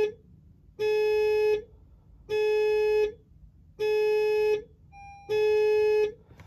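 An electronic warning chime in a 2022 Honda HR-V repeats steadily: one long, clear beep about every second and a half, four in all.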